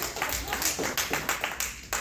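A small group clapping hands, the claps thinning out and dying away near the end.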